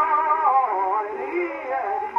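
Early acoustic Berliner disc played on a horn gramophone: a tenor sings an operatic cavatina with wide vibrato over the accompaniment, held notes and a short slide in pitch in the middle. The sound is thin and narrow in range, with nothing above the middle treble.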